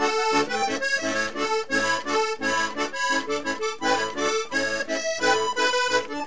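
Vallenato button accordion playing a quick instrumental passage of short melody notes over a bass line pulsing about twice a second.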